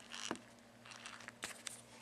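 Faint handling noise: a few light clicks and soft rustles over a low steady hum.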